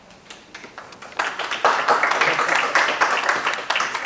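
Audience applauding: a few scattered claps, then full applause starting about a second in and dying away at the end.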